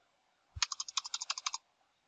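Computer keyboard's Enter key pressed about six times in quick succession: a rapid run of sharp key clicks lasting about a second, starting about half a second in with a dull thump.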